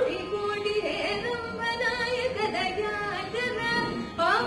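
A woman singing solo into a microphone in Carnatic style, her voice sliding and bending between held notes.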